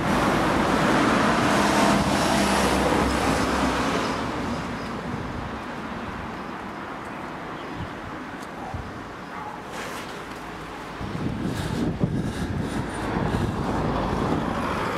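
Road traffic: a car passes close by in the first few seconds, its tyre and engine noise fading out, leaving quieter traffic noise. Near the end the noise rises again, with a few short knocks.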